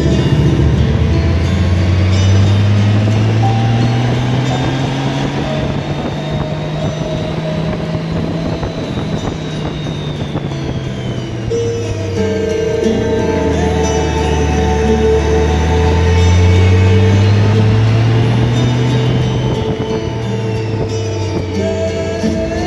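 Motorcycle engine running on the move, its pitch climbing and falling twice as the bike speeds up and slows through curves, with wind noise. Music plays over it throughout.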